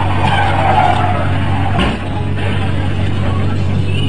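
Road traffic noise with a vehicle skidding, then one crash impact just before two seconds in.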